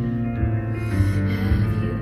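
Live female vocal ballad over soft acoustic band accompaniment, sung into a handheld microphone. A breath is drawn into the microphone about a second in.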